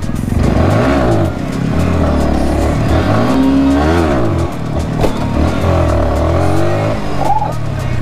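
Yamaha sportbike engine being revved repeatedly, its pitch climbing and dropping several times.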